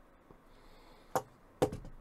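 Two sharp plastic clicks about half a second apart, the second followed by a few small ticks, as a clip piece is pushed back onto the Joby TelePod Mobile tripod's handle.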